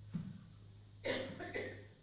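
A man coughs briefly about a second in, with a smaller sound just before it, over a steady low electrical hum from the sound system.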